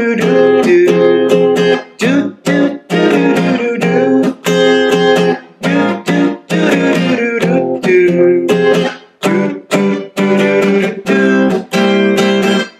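Acoustic guitar playing a progression of jazzy-sounding chords with a short melody over them, strummed in phrases separated by brief pauses.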